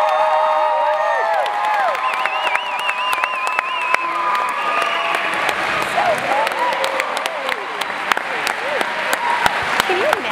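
Audience applauding and cheering, with long wavering whoops from several voices over the clapping; one high-pitched whoop rises above the rest in the first half.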